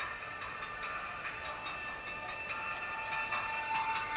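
Live band music carrying from a distant outdoor concert stage, with sustained notes, growing louder near the end.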